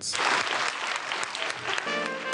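Schoolchildren applauding. Near the end, music with sustained held notes comes in and takes over.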